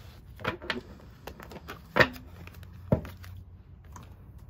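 Oracle cards being handled and knocked down on a tabletop: a few soft clicks, then two sharp taps about two and three seconds in, the first the loudest.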